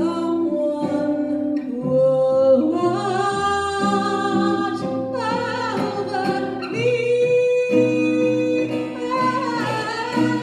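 A woman singing live in long held notes, accompanied by a strummed acoustic guitar.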